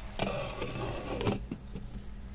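Glass pot lid being set onto a metal cooking pot, with a little rustling and then a few light clinks about halfway through as it settles on the rim.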